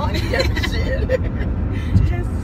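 Steady road and engine rumble inside a moving car's cabin, under women's voices, with a brief thump near the end.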